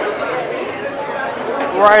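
Chatter of a crowd of diners talking at once in a large, high-ceilinged restaurant hall. Near the end a man close by starts speaking over it.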